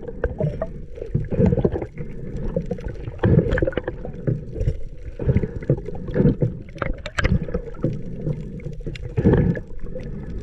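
Muffled underwater sound through a waterproof camera housing: a low rush of water with irregular swishing surges about once a second and a few sharp clicks.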